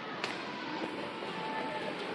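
Store ambience with faint background music while riding a running Mitsubishi down escalator, with one light click about a quarter second in.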